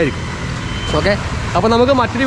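Road traffic: a passing motor vehicle's low, steady engine rumble, with a short high beep about halfway through.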